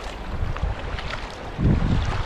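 Kayak paddle strokes splashing in the water, with wind rumbling on the camera microphone; a louder low rumble swells near the end.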